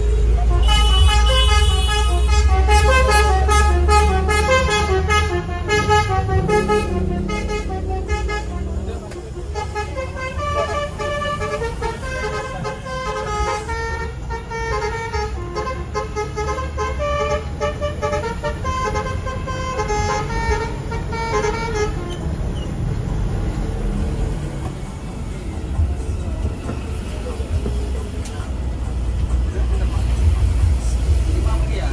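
Bus telolet horn, a multi-tone air horn worked from a button box, playing a stepped melody of several notes. It stops a little after twenty seconds in. Under it the bus's Mercedes-Benz 1626 diesel engine keeps up a steady low rumble.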